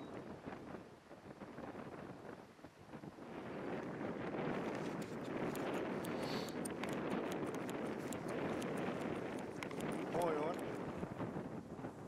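Wind noise on the microphone that swells about four seconds in, with many irregular sharp clicks through the second half.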